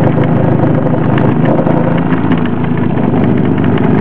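Small Joseph Newman-style motor, a permanent magnet spinning inside a wire coil, running free with no load at high speed on about 4 volts: a steady, fast buzzing whir.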